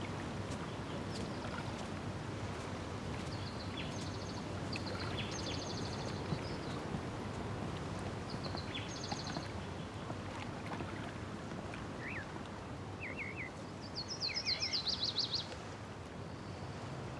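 Outdoor lakeside ambience: a steady low rushing background with small birds chirping and trilling now and then. The busiest run of quick trills comes near the end.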